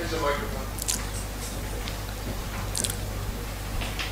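Steady low hum of a conference room's sound system, with a faint, distant voice in the first half-second and a few light clicks.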